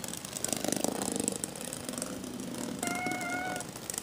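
Small rechargeable toys running on a hard floor, with a rapid buzzing rattle. About three seconds in, a short steady high tone sounds for under a second.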